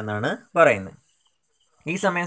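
A man narrating in Malayalam, with a pause of about a second in the middle before he speaks again.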